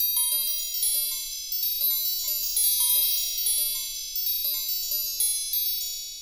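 Sparkling chime sound effect: a dense shower of high, bell-like tinkling tones, like wind chimes, coming in repeated swells and fading out near the end.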